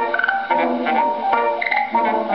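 A 1920 Victor 78 rpm record of a ragtime fox trot by a small dance band, played back acoustically through the horn of an EMG gramophone, with quick changing melody notes over a steady dance beat.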